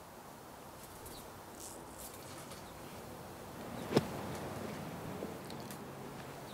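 Quiet outdoor golf-course ambience with one sharp knock about four seconds in.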